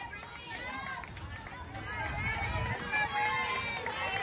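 Indistinct voices of spectators and players calling out across the field, overlapping and faint. A low rumble runs under them in the middle.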